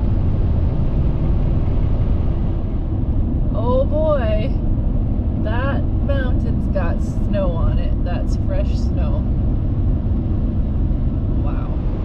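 Inside a car's cabin at highway speed: a steady low rumble of tyres and engine. A voice talks over it for a few seconds in the middle.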